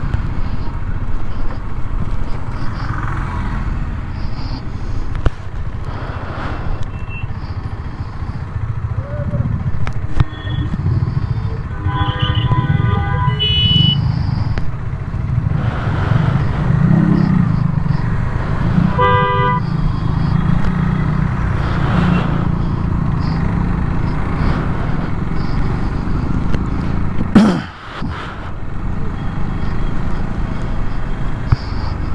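Motorcycle engine running with road and wind noise while riding in traffic. Vehicle horns honk twice, about twelve and nineteen seconds in. A brief loud noise comes near the end.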